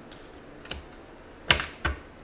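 Tarot cards being handled: a brief rustle, then three sharp clicky snaps of cards, the loudest about one and a half seconds in.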